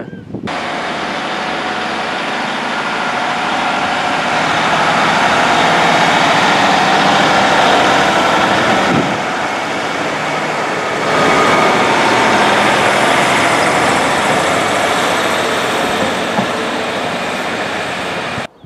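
Class 150 Sprinter diesel multiple unit running past close by on the line at Radyr. Its rumble and wheel noise come in suddenly about half a second in, swell through the middle, ease briefly and build again.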